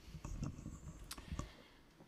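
Handling noise: four or five scattered soft clicks and knocks over a low rumble.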